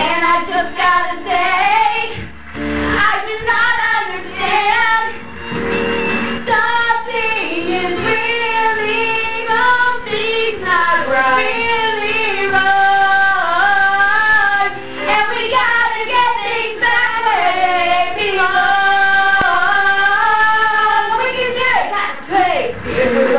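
Teenage girls singing into karaoke microphones over a pop-musical backing track, the melody moving in short phrases and then settling into long held notes in the second half.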